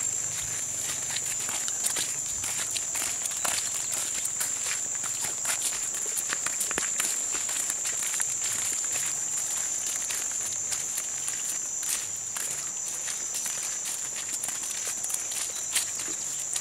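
A steady high-pitched insect drone runs throughout, over scattered light footsteps of sandals on a muddy dirt road and small clicks and rustles.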